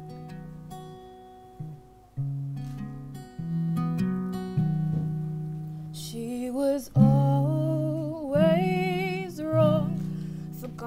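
Acoustic guitar playing a slow picked intro of single held notes and chords; about six seconds in, a woman's singing voice enters over the guitar, its pitch wavering on held notes.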